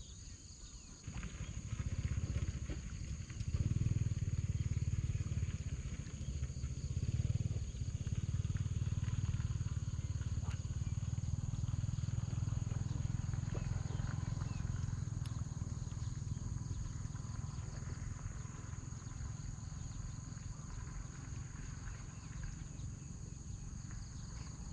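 Wind buffeting the microphone: a low rumble that starts about a second in, is strongest around four and seven seconds, then slowly eases. A steady high-pitched insect buzz runs underneath.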